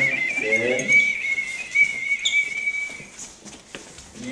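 A single long, steady high whistle note, held for about three seconds, slightly wavering at its start before cutting off.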